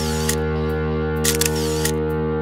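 Rapid bursts of camera shutter clicks, a short burst at the start and another a little over a second in, over a steady held music chord.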